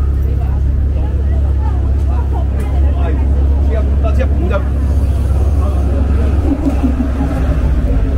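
Busy street ambience: passers-by talking over a steady low rumble of traffic.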